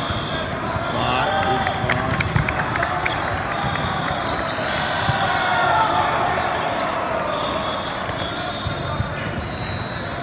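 Volleyball rally on an indoor hall court: the ball is struck several times in sharp slaps, the loudest about two and a half seconds in. A steady babble of many voices runs underneath.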